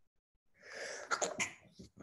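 A person sneezing: a breathy rush builds from about half a second in and peaks in sharp bursts a little over a second in, followed by a shorter burst of breath near the end.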